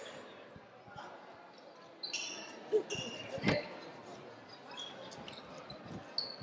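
A handball bouncing on the sports-hall floor, with two distinct thuds a little past the middle. Faint squeaks and distant voices echo in the large hall.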